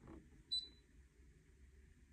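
Brother ScanNCut cutting machine giving a single short, high electronic beep about half a second in.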